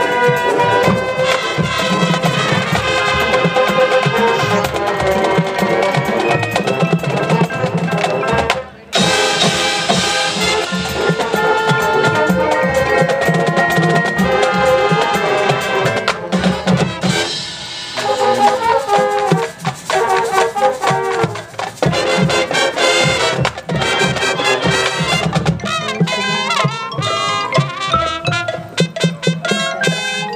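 High school marching band playing: the brass section holds sustained chords over drumline percussion. The music stops briefly about nine seconds in, and the second half turns choppy, with short rhythmic brass and drum hits.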